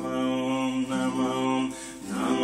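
Music: a voice chanting a devotional song in long held notes, dipping in loudness near the end.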